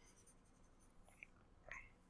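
Near silence: room tone with a few faint taps.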